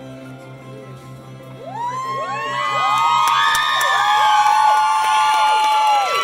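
A crowd of guests cheering and whooping, with clapping, swelling up about two seconds in as the last held note of a song dies away.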